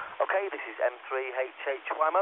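A man's test call coming in over a UHF two-way radio at the receiving base station. His voice sounds thin and telephone-like, cut off below and above the speech range, and it comes through clearly with little hiss.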